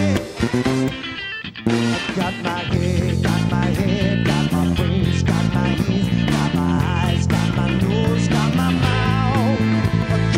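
Swing big band playing live, with a horn section over drums, guitar and bass. Just after the start the music drops back briefly, and the full band comes back in at about a second and a half.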